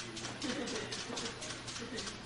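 A faint, indistinct low voice murmuring over steady background hiss.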